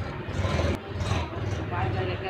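Tractor engine running with a steady low chug while the tractor moves its trolley, with people talking over it.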